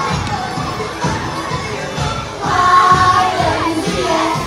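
A group of young children shouting together over dance music with a steady beat of about two a second; the loudest shout comes a little past halfway and lasts about a second.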